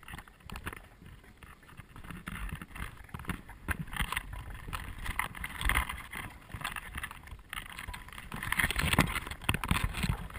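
Rustling, scuffing and small knocks of a person clambering along a rocky bank, with clothing and footsteps close to a head-mounted camera's microphone. The noise is irregular and grows louder after the first couple of seconds.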